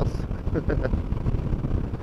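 Wind rushing over the microphone with the low, steady drone of a Honda NC 750X's parallel-twin engine and road noise, cruising at about 90 km/h.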